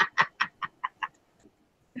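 A person laughing in a quick run of 'ha' pulses, about five a second, that dies away about a second in.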